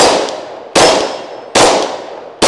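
Three shots from a Gen 4 Glock 20 10mm pistol, about three-quarters of a second apart, each very loud with a short decaying echo, and the hit steel plates ringing after them.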